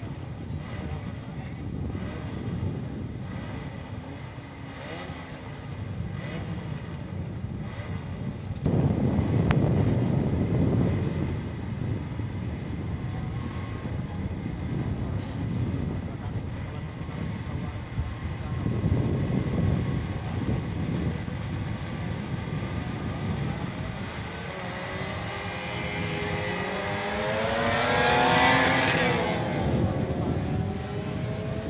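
Classic Mini racing cars' engines running and revving as a pack: a low rumble that swells several times. Near the end several engine notes rise in pitch together as the cars accelerate away, loudest just before the close.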